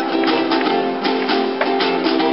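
Live acoustic band playing an instrumental passage: strummed acoustic guitars and a small high-strung instrument over a snare drum and cymbal, in a steady rhythm of about four to five strokes a second.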